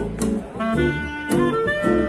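Live swing jazz from a small acoustic band: a reed instrument plays the melody over strummed acoustic guitar and plucked upright double bass.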